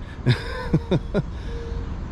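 A man chuckling: a few short laughs, each falling in pitch, in the first second or so, over a steady low rumble of city traffic.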